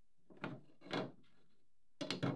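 Two brief wooden knocks and scrapes, about half a second apart, as cherry seat slats are lifted out of a canoe's slat seat after their screws are backed out.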